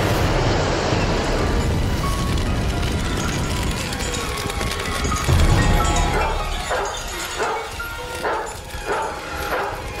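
Dramatic film score, with a fire burning in a fireplace. In the second half a run of short, evenly spaced bursts comes in, about two a second.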